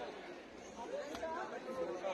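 Low background chatter of several people talking at once, with no single voice standing out.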